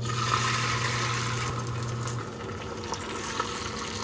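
Beaten egg sizzling as it hits a hot, oiled tamagoyaki pan (rectangular nonstick omelette pan). The sizzle starts at once and eases after about two seconds. A low steady hum stops about halfway through.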